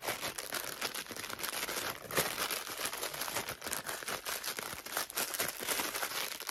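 Plastic packaging crinkling and rustling in irregular crackles as a boxed vinyl Pop figure is pulled out and its plastic bag is worked at.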